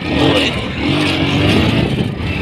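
Motorcycle running as it carries its riders along the road, a loud, uneven low rumble.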